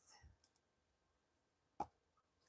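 Near silence with one short, sharp click near the end.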